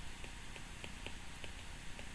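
Faint small ticks of a stylus on a tablet's glass screen, a few a second and unevenly spaced, as words are handwritten, over a low steady hiss.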